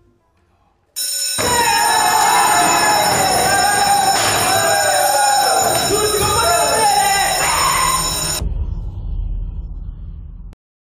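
An electric school bell rings loudly for about seven seconds, starting suddenly about a second in and cutting off abruptly, with voices shouting over it. The bell marks the end of the lesson.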